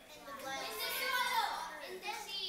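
Children's voices in an audience calling out an answer to a question, faint and overlapping.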